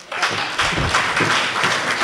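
Audience applauding: dense, even clapping that starts a fraction of a second in and holds steady.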